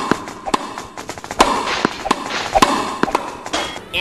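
A basketball bouncing on a hardwood gym floor: a string of sharp, unevenly spaced knocks.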